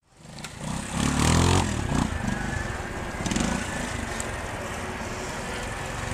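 Vintage trials motorcycle engine revving up about a second in, then running at low revs as the bike is ridden slowly through the section.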